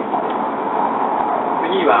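Steady running noise of a W7 series Shinkansen heard inside the passenger cabin, an even rushing hum, with the recorded onboard announcement pausing in the middle and resuming near the end.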